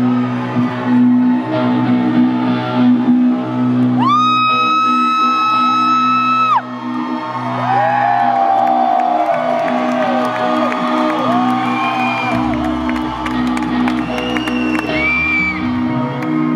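Live rock concert between songs: a steady low drone rings from the stage while the crowd whoops and shouts over it. About four seconds in there is one long, shrill, held whoop, and a deep bass note comes in near the end.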